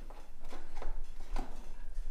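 Screwdrivers clicking and scraping against a fuel gauge as it is pried up out of a mower's fuel tank, a few short sharp ticks spread through the two seconds.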